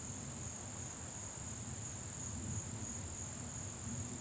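Steady high-pitched insect chorus, a continuous drone that holds unchanged, with a faint low rumble beneath it.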